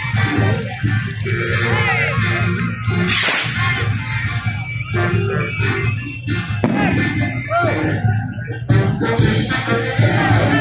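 Loud music with voices mixed in, and a brief hissing burst about three seconds in.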